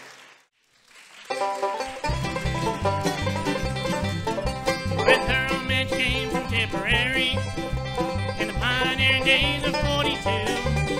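Acoustic bluegrass band playing, with banjo, fiddle, mandolin, guitar and upright bass. After a short silence the music starts about a second in, and the bass joins a moment later under a steady beat.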